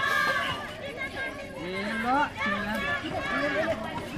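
Several people calling out and chattering at once, overlapping shouts from the spectators and players around a football pitch, fainter than a close voice.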